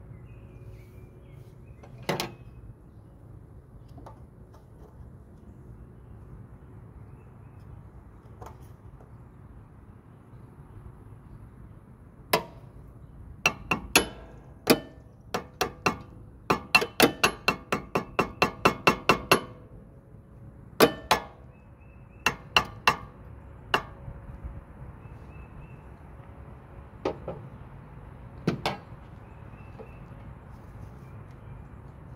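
Sharp metal strikes on a stuck Briggs & Stratton spin-on oil filter as a screwdriver is driven into the side of its canister to get leverage on it. A few single strikes come first, then a fast run of about three a second in the middle, then a few more near the end.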